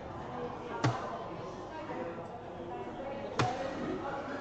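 Two soft-tip darts striking an electronic dartboard: two sharp clacks, one about a second in and one near the end, over a steady murmur of voices.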